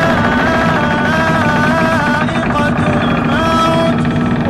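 Chanted Quran recitation: a single voice holding long, wavering melismatic notes that slide between pitches, over a steady low drone.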